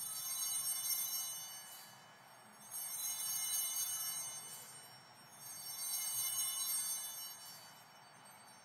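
Small altar bells (Sanctus bells) rung three times at the elevation of the chalice. Each ring is a bright cluster of high bell tones lasting about two seconds, and the rings come about three seconds apart.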